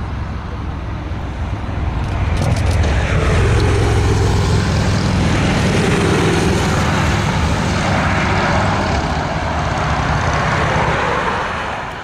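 Airbus A320's twin jet engines running at high power on the landing rollout, plausibly reverse thrust as the jet brakes with its spoilers up: a loud, steady rushing noise over a low hum that swells about two seconds in and falls away near the end as the engines spool down.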